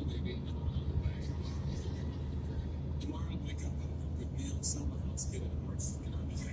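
Steady low road rumble inside a car cabin at highway speed, with faint talk playing under it.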